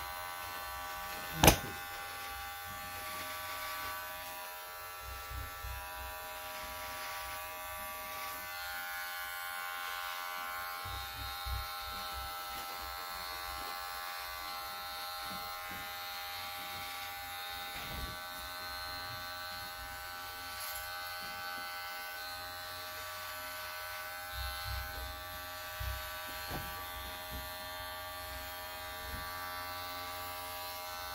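Cordless electric hair clipper running steadily with an even buzz as it trims a beard. A single sharp click about a second and a half in.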